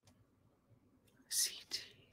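A woman whispering under her breath, with a short, sharp 's' hiss about a second and a half in and a softer one just after.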